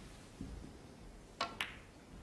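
Two short, sharp clicks about a fifth of a second apart, a little past halfway, over a quiet hush.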